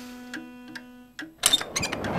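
Wristwatch ticking as a cartoon sound effect, about two or three ticks a second, over a steady low held tone that stops about a second in. A quick flurry of loud, sharp clicks and knocks follows near the end.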